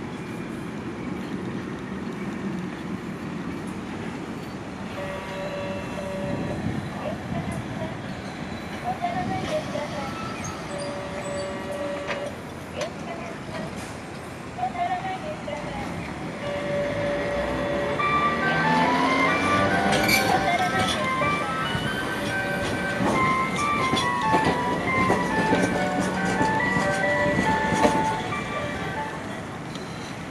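A Toyama city streetcar running in the station plaza. A motor whine rises about two-thirds of the way in, as when a tram accelerates. Over it, in the second half, an electronic melody of short stepped notes plays loudly.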